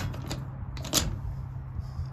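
Padlock and steel hasp on a metal door clinking as the lock is closed, with a sharper click about a second in.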